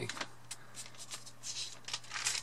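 Thin Bible-paper pages of a leather Bible being turned by hand: a few short, crisp rustles, the longest about one and a half seconds in.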